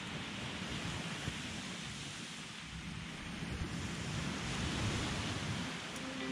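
Surf washing onto a sandy beach, a steady rushing noise, with wind buffeting the microphone.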